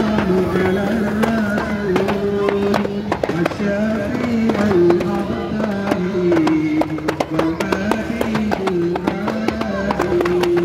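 Voices singing a slow devotional chant together, long held notes stepping up and down, with scattered sharp clicks and knocks throughout.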